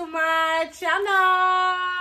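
A woman singing in a high voice: a short note, a quick slide, then a long held note.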